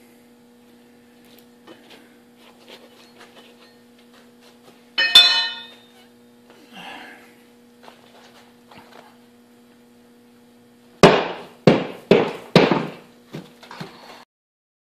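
A single ringing metallic clink about five seconds in, like the aluminum casting being set down. Near the end come four hard, quick knocks and then two lighter ones, as the wooden sand-casting flask is knocked against the barrel of moulding sand.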